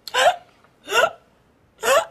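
A woman hiccuping loudly three times, about a second apart, each hiccup a short vocal yelp rising in pitch.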